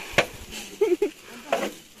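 A few short, sharp knocks between brief bits of voices and laughter.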